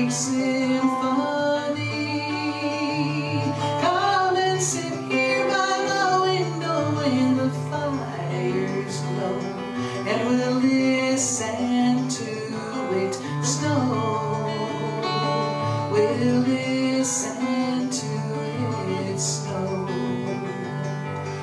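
A woman singing live with her own acoustic guitar accompaniment: strummed chords under long, wavering sung notes.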